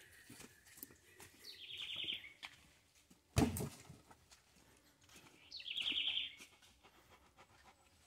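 A bird calls twice, each time a short, high, rapid rattling trill. About three and a half seconds in there is a single heavy thud of a wooden post or log dropped on the dirt ground.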